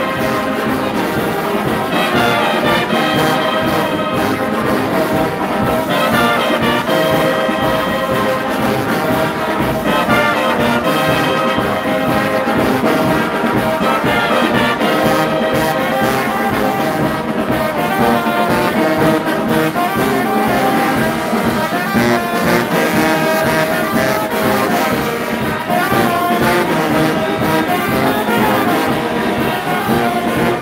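Music led by brass instruments, playing without a break.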